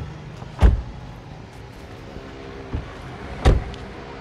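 Two heavy thuds of a car's doors being shut, about three seconds apart, over a steady low hum.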